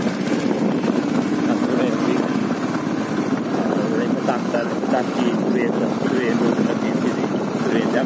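Steady engine and road noise of a motorcycle riding along, running evenly with no change in speed.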